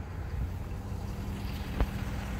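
Low, steady rumble of wind on a phone microphone, with a faint steady hum coming in about a second in and one sharp click near the end.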